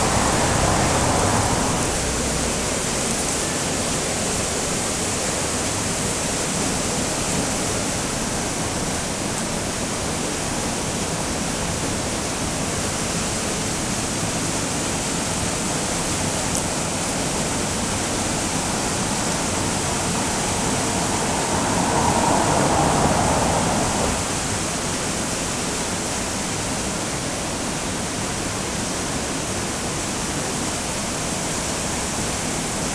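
Steady rushing of water pouring over a river weir, a constant roar with no pauses. It grows a little louder for a couple of seconds at the start and again about three-quarters of the way through.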